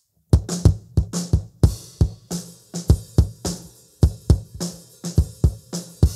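Playback of a recorded bass-drum mic track through a high-boosted EQ, with the lows and mids cut, for a punchy rock kick. It starts a fraction of a second in and runs as a quick, uneven pattern of sharp hits, several a second, with the snare bleeding in.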